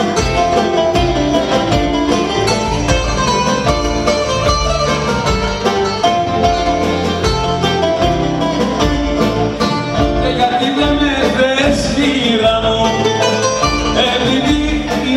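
Live Greek dance music: a bouzouki playing the lead melody over drum kit and keyboards. A man's singing voice comes in over the band near the end.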